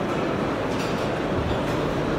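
Steady background din of a busy exhibition hall: a dense, even rumble of indistinct crowd chatter and hall noise, with no single voice or event standing out.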